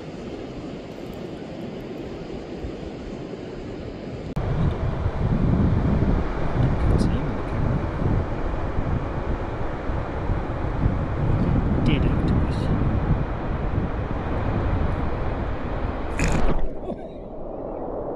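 Wind buffeting the microphone: a rough, uneven low rumble over a steady hiss. It starts suddenly about four seconds in and cuts off shortly before the end.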